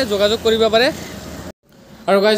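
A man's voice speaking for about the first second, then faint background noise that cuts off abruptly.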